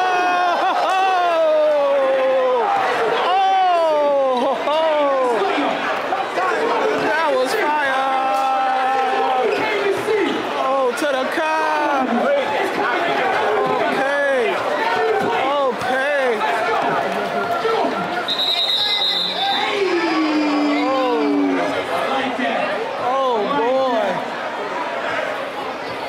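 Crowd of basketball spectators shouting and talking over one another, with many voices rising and falling at once and occasional sharp knocks from play on the court. A short, steady, high-pitched tone sounds about eighteen seconds in.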